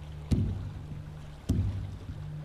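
Oars of a rowed boat pulling through water in a steady rhythm, two strokes a little over a second apart, each fading out, over a low steady hum.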